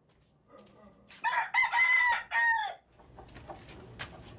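A rooster crowing once, about a second in: a multi-part crow lasting about a second and a half, its last note falling in pitch.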